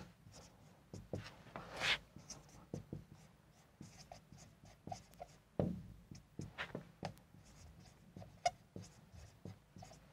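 Marker pen writing on a white board: a run of short, uneven scratching strokes as words are written out, with a longer stroke about two seconds in.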